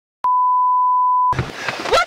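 A single steady electronic beep, one pure high tone about a second long, that cuts off abruptly. Noisy film soundtrack audio follows, with a knock near the end.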